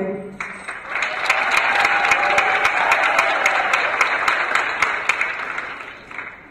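Audience applauding, starting about half a second in as the last sung note trails off, then fading out near the end.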